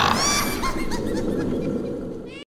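A spooky cartoon laugh trailing off in a series of falling "ha"s with echo, fading away.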